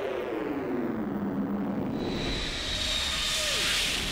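Synthesised logo sound effect. A stack of tones sweeps down and settles low, then a swell of noise rises with a thin high tone, building to a peak near the end.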